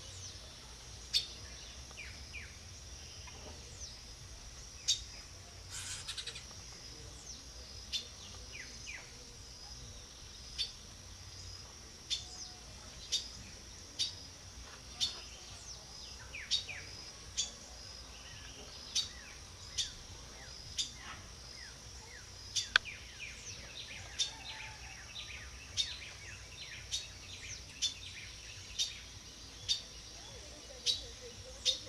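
Small birds calling: short, sharp call notes, a few at first and then about one a second, with softer falling chirps between them. A steady high insect drone runs underneath.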